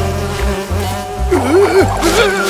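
Cartoon bees buzzing as a steady hum that starts wobbling up and down in pitch about halfway through, over background music.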